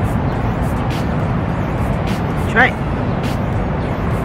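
Steady low outdoor background rumble with no distinct events, and one short spoken word about two and a half seconds in.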